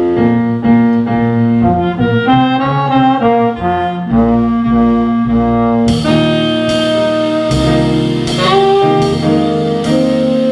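Live jazz band playing an instrumental passage: saxophone and a brass section with trombone sustaining chords over piano. About six seconds in, the drum kit's cymbals join with a steady beat.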